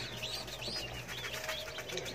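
A brood of young baladi chicks peeping softly: a scatter of short, high chirps that rise and fall.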